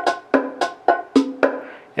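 A Roland Octapad SPD-30 playing its bachata-style phrase loop at 110 beats a minute: a steady pattern of short percussion hits, about three to four a second.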